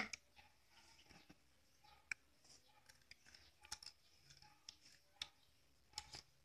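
Near silence broken by a few faint, scattered clicks from green apricots being handled, dipped in chili salt and bitten.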